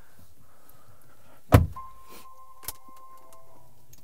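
Car door of a 2021 Acura TLX A-Spec pulled shut with a single solid thud about a second and a half in, followed by a steady electronic chime tone from the cabin lasting about two seconds, with a short click partway through.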